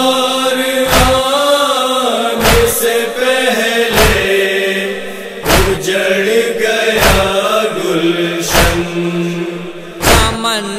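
Men chanting a nauha, a Shia lament for Muharram, in one sustained melodic line. It is kept in time by chest-beating (matam), one sharp thump about every second and a half.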